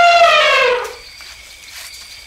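Elephant trumpeting: one long, brassy call that sags in pitch and stops about a second in, followed by faint background noise.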